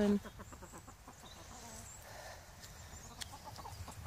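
Chickens clucking quietly now and then.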